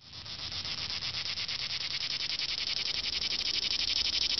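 An insect chorus chirping in a fast, even pulse, fading in over the first second and running on steadily.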